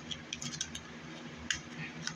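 Fingers and nails picking at a small cosmetic packet: a few short, crisp clicks and crinkles, the sharpest about one and a half seconds in.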